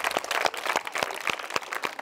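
Applause from a crowd of schoolchildren: many irregular hand claps that thin out and grow quieter.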